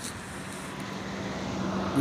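A motor vehicle's engine running with a steady hum, gradually growing louder.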